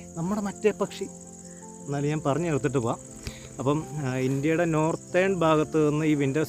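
A man talking in short phrases over a steady, high-pitched chirring of crickets, which is plain in the pauses between his words.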